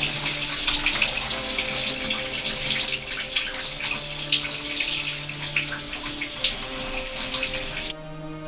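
Shower running: a steady spray of water splattering against a tiled wall and a person's body, with soft background music underneath.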